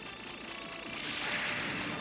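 Electronic sci-fi cartoon sound effect of many quickly sweeping tones that swells in loudness, with music underneath.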